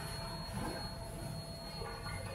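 Kitchen room tone: a low, steady hum with a faint thin high tone above it and no distinct knocks or clinks.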